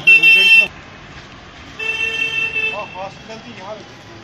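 A vehicle horn honks twice: a short, loud blast at the start and a longer, quieter one about two seconds in.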